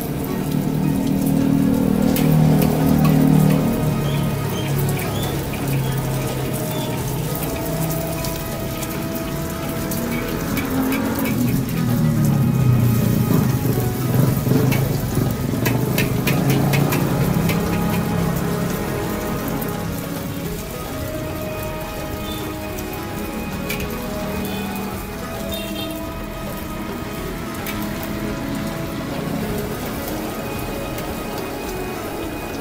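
Egg frying in hot oil in a wok over a gas burner, with a steady sizzle. A metal spatula scrapes and clinks against the wok several times around the middle. Music plays along.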